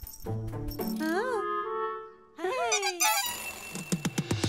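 Cartoon soundtrack: a short steady low tone, then wordless cartoon voice sounds with bending, rising-and-falling pitch. Electronic background music comes in about three seconds in.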